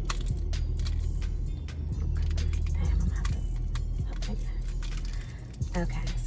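Small clicks, rattles and crinkles of fingers picking open a new, still-sealed tin of Altoids mints, over a steady low hum.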